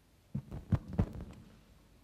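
Microphone handling noise: a few dull low thumps and rubs, the loudest about three-quarters of a second and one second in.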